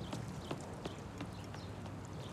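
A few light clicks and taps, spaced irregularly, over a low steady background hum at a dinner table.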